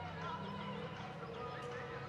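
Hoofbeats of a horse loping on soft arena dirt, over a steady low hum.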